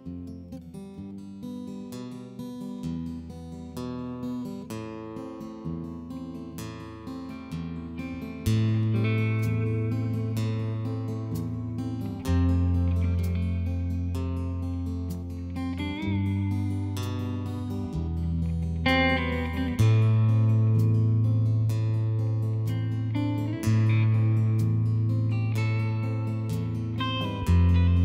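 Instrumental intro of a folk-rock song: acoustic guitar picking, joined after about eight seconds by long, sustained low bass notes that change every few seconds. The music grows louder as the bass comes in.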